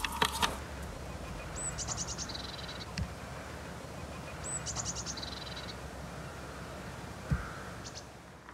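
A small songbird sings the same short phrase twice: a high note, then a quick run of notes that drops into a lower trill. This comes over a steady outdoor hiss. There is a dull thump about three seconds in and a louder one near the end.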